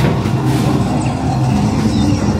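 Loud arcade din: a light-gun shooter cabinet's game sound effects blaring over the hall's noise, a dense, steady low rumble.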